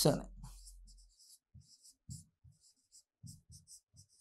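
A pen writing on an interactive whiteboard: a run of short, faint, scratchy strokes, a couple slightly louder about two and three seconds in.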